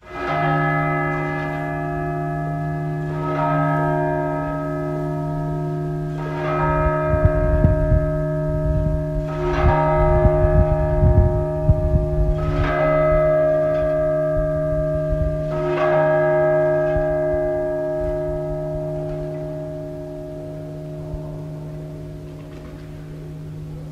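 A large church bell tolling, struck six times about three seconds apart. Each strike rings on over a steady low hum, and the ringing dies away near the end. A low rumble rises underneath in the middle.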